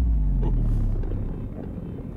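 Deep rumbling sound effect from a TV episode's soundtrack, with a low tone sliding downward in the first second and then fading.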